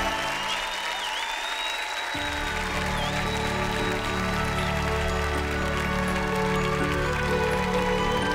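Studio audience applauding over the show's background music. The music's bass comes in about two seconds in.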